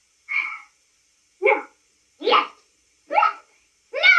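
Two women's voices from a television speaker trading short shouted one-word exclamations, four in quick succession about a second apart. A long falling cry begins right at the end.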